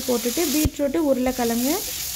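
Beetroot and potato cubes sizzling in hot oil in a frying pan as they are stirred. The sizzle thins briefly just after half a second in. A woman's voice runs over it and is the loudest sound.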